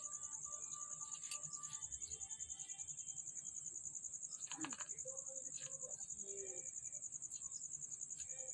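Insects chirring in one continuous, finely pulsing high-pitched drone, with a few faint distant calls about halfway through.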